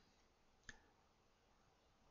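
A single short computer mouse click about two-thirds of a second in, against near silence.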